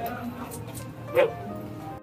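A man barks a short, sharp drill command about a second in, over steady background music.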